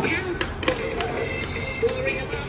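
Electronic toy helicopter playing a simple beeping tune of steady stepped notes, with several short clicks as it is handled.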